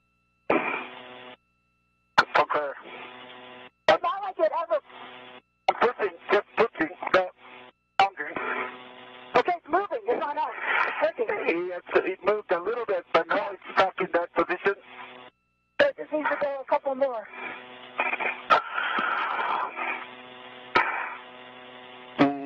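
Voices over the spacewalk's radio loop, thin and cut off in the highs, dropping in and out abruptly with clicks as the channel is keyed.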